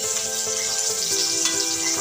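Dried fish frying in hot oil in a wok, a steady sizzle as the pieces are turned with a spatula, with background music playing over it.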